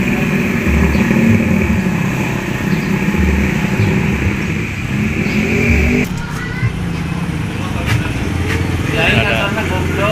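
Street traffic: a small motor-vehicle engine runs loud and close, then breaks off abruptly about six seconds in. A quieter engine hum follows, with a man's voice near the end.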